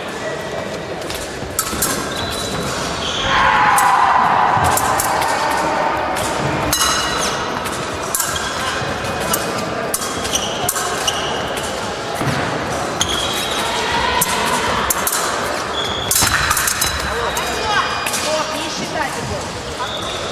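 Épée bout in a large echoing sports hall: sharp clicks and clinks of blades, thuds of fencers' footwork on the piste, and voices around the hall, with a loud shout about three seconds in.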